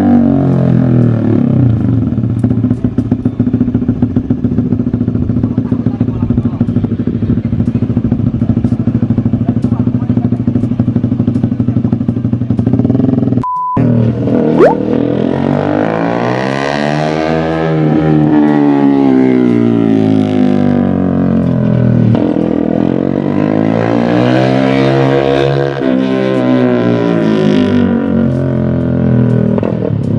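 A small motorcycle engine is ridden on a practice circuit. It holds a steady note for about the first thirteen seconds. After a brief cut, it climbs and falls in pitch twice as the rider opens the throttle and backs off through the corners.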